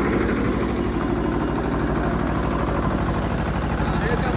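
Tractor diesel engine running steadily at close range, hitched to a potato planter during sowing; a constant low hum with no change in pace.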